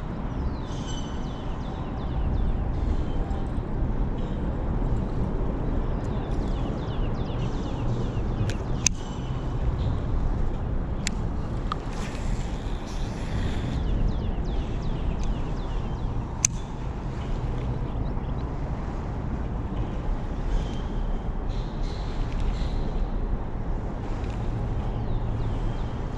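Steady low rumble of road traffic on the bridge overhead, with faint high chirps coming and going and a few sharp clicks in the middle.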